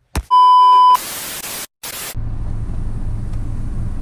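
A loud, steady electronic beep lasting under a second, followed by two short bursts of static-like hiss. From about two seconds in comes the steady low hum of a car cabin with the engine running.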